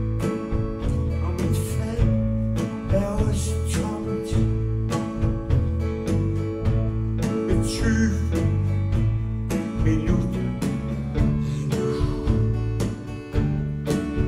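Live rock band playing a song at full volume: electric guitar, keyboards and organ over bass and drums in a steady beat.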